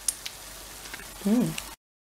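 Banana fritters frying in hot oil: a steady sizzling hiss that cuts off abruptly shortly before the end.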